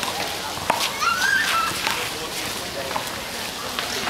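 Players' voices calling in the background across an outdoor handball court, with a couple of sharp knocks about a second apart.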